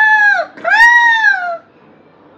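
A woman loudly imitating a crow's caw: two drawn-out calls that rise and fall in pitch, the second longer.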